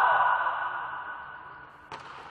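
Players' loud shout in a reverberant sports hall, dying away over about a second and a half, then one sharp slap of a hand striking a volleyball near the end.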